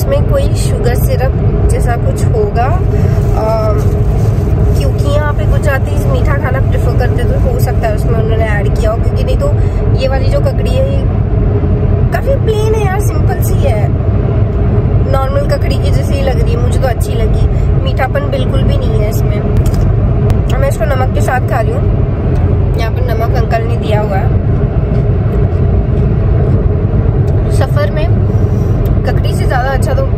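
Steady road and engine rumble inside a moving car's cabin, with voices talking over it.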